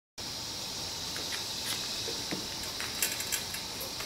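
Steady faint hiss of room tone, with a few light clicks and a brief small jingle about three seconds in.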